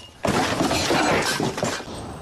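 Glass shattering: a loud crash that starts about a quarter second in and runs for about a second and a half before dying away.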